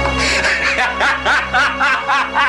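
A man laughing loudly in a rapid run of short bursts, over steady background music.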